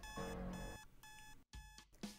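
Digital clock radio alarm beeping: a repeated electronic tone, about three beeps in two seconds.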